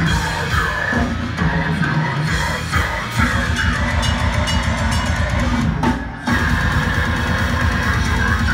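Deathcore band playing loud live, with distorted guitars and a pounding drum kit, heard from inside the crowd. The band stops dead for a moment about six seconds in, then crashes back in.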